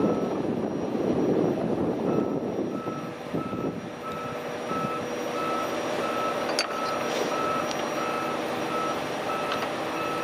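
Heavy-equipment backup alarm beeping about twice a second in a single steady tone, over diesel engines running on the site, the engine noise louder in the first few seconds. A single sharp knock about two-thirds of the way through.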